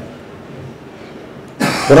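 A man at a microphone pauses his speech, then gives one short cough about one and a half seconds in, just before he starts talking again.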